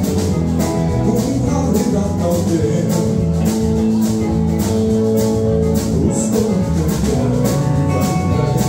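A live rock band playing: electric guitars over a steady drum-kit beat, with one long held note through the middle.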